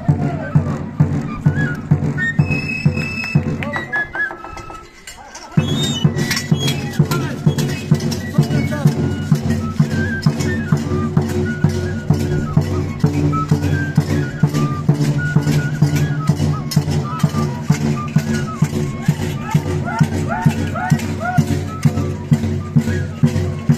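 Festival band music for a Turcos dance: a large bass drum beating a steady rhythm of about two strokes a second, with a high melody line over it. The music drops away about four seconds in and comes back sharply about a second and a half later.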